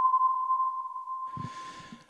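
A steady electronic tone at a single pitch, slowly fading away, from a title-card sound effect; faint static hiss comes in during the second half.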